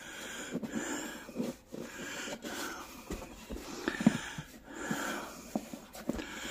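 A man's breathing, heard close to the microphone in repeated short breaths, over the rubbing and light knocks of hands shifting a flat rubber tire and inner tube on a steel rim.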